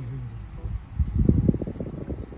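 Small oscillating desk fan blowing air onto the microphone as its head swings toward it: a low, fluttering wind noise that swells to its loudest a little after a second in.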